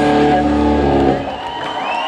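A rock band's last held chord ringing out on guitar and keyboards, stopping about a second in, leaving lower crowd noise.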